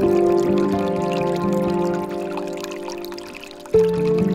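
Slow, soft relaxation music of sustained chords over water pouring and trickling from a bamboo fountain spout. The chord fades away through the second half, and a new chord comes in sharply near the end.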